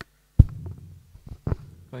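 Two low thumps on the microphone about a second apart, the first the louder, with faint low rumbling between them.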